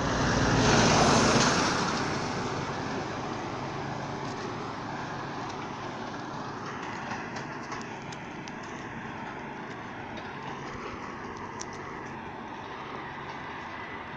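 A road vehicle passes close by, its noise swelling to a peak about a second in and then fading, followed by steady traffic noise from the highway.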